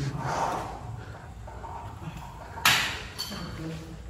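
A single sharp metallic clank about two-thirds of the way in, typical of gym weights being set down or knocked together, with a brief faint ring after it, over low background voices.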